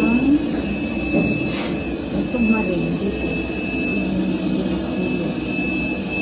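Steady machinery or air-handling hum with a thin, high, unchanging whine, inside the submarine's steel compartments, under people's voices talking.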